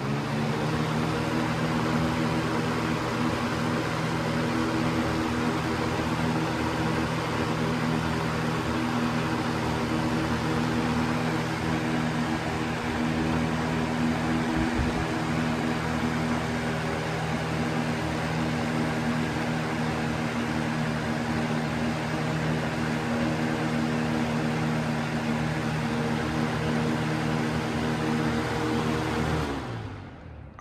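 Lasko Weather-Shield box fan with a PSC motor running on high speed with its grill removed: a steady rush of air over an even motor hum. It is switched off near the end.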